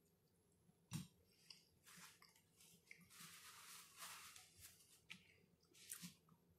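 Faint chewing of a mouthful of peanut butter and jelly sandwich, with soft mouth clicks and wet smacking, the loudest click about a second in.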